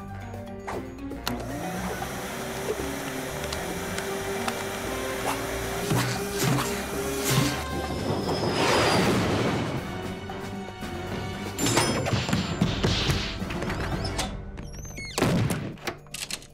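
Animated-film soundtrack: background score with cartoon sound effects, a rushing swell around the middle and again near the end, and several sharp thuds and crashes.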